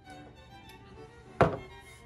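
A clear cup of juice set down on a countertop with one sharp knock about one and a half seconds in, over soft background music with violin.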